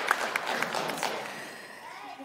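Audience applause dying away: dense clapping thins out and fades over about a second and a half, leaving the hall quiet.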